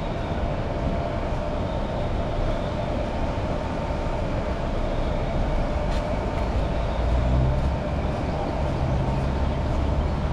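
Steady road traffic going by on a busy street, with a deeper engine rumble from a heavier vehicle coming in about seven seconds in.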